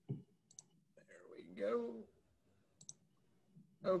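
A few separate computer mouse clicks while a presentation is being opened on screen, with a man's brief low muttering between them.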